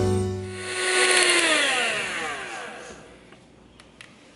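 Electric hand mixer with its beaters in whipped coffee, whirring and then winding down as it is switched off, its pitch falling over about two seconds.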